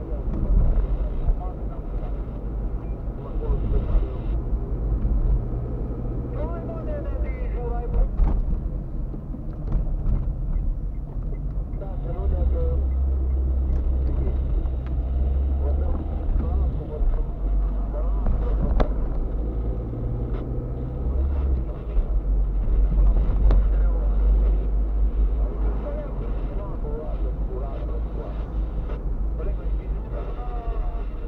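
Car's engine and road noise heard from inside the cabin while driving: a steady low rumble with a droning engine note that shifts in pitch a few times as the car changes speed.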